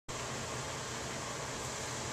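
Steady background hiss with a faint low hum: room tone with no distinct event.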